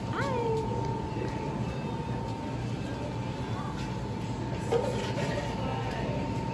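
Bar room ambience: a steady low hum with a thin constant tone over it. Right at the start comes one short voiced call that rises and then falls in pitch.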